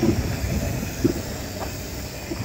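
Steady low rumble of outdoor street noise, with two brief knocks about a second apart.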